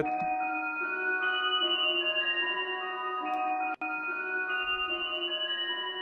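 Playback of a slow trap melody in D sharp: sustained, overlapping software-synth notes. A low-cut EQ at about 200 Hz strips out the lows, leaving the melody thin and bright. The sound drops out for an instant a little before the fourth second.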